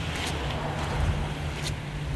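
Steady shoreline ambience: an even rumble and hiss of wind and small waves washing over a rocky shore, with a constant low hum underneath.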